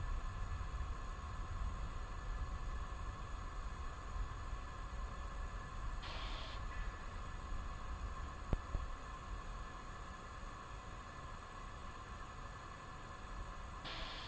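Faint steady hiss and low rumble with a thin hum. There is a short hiss about six seconds in and a single click a little after eight seconds.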